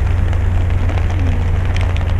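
Steady noise of rain falling, over a constant low rumble.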